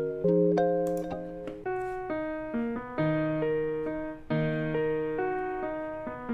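Keys loops from a sample library auditioned one after another: piano-style chords struck and left to ring, a new chord about every half second to a second, with a change to a different loop partway through.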